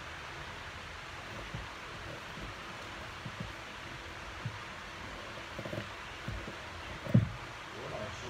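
Steady hiss of electric fans running in the room, picked up by the microphone, with a few soft thumps; the loudest thump comes about seven seconds in.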